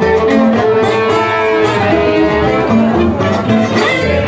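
Live gypsy jazz: a violin playing a flowing melody of held and sliding notes over steady strummed rhythm-guitar chords.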